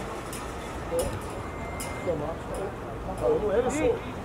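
Shouted voices across an open football pitch, loudest in the last second, over steady outdoor background noise. A single sharp knock comes about a second in.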